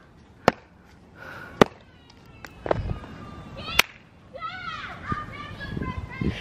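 Three sharp slapping claps, about half a second, a second and a half and nearly four seconds in, with faint shouting voices in the distance.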